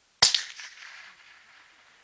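A single shot from a suppressed .308 rifle: one sharp crack that dies away over about a second.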